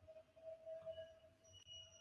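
Near silence, with a faint steady electronic tone held through most of the stretch.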